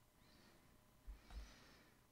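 Near silence: room tone, with two faint low thumps about a second in.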